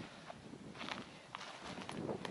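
A few faint footsteps on dry, stony ground.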